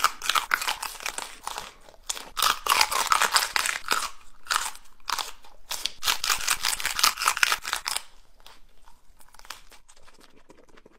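A person biting and chewing raw chili peppers: crisp, crackly crunches in rapid bursts, pausing briefly twice, and dying down to faint noise for the last two seconds.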